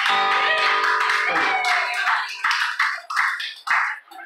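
Acoustic guitar's last strummed chord ringing out at the end of a song, followed by a few people clapping: scattered, irregular hand claps over the final second and a half.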